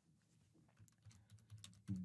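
Faint computer keyboard typing: a quick run of light key clicks in the second half.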